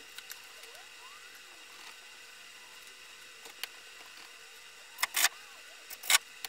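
Quiet workshop room tone with a steady faint hum. A short burst of noise comes about five seconds in, with a fainter one a little earlier.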